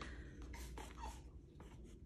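Faint scratching and light rubbing as fingers press soft, moist pancake halves onto a foam plate.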